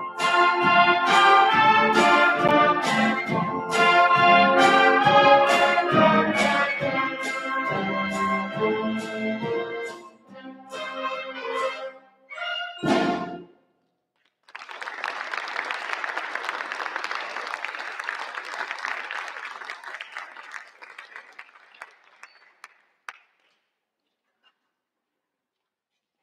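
A school concert band of woodwinds, brass and percussion plays the closing bars of a piece with accented chords, ending on a short loud final chord about 13 seconds in. After a moment of silence the audience applauds for several seconds, and the applause fades out near the end.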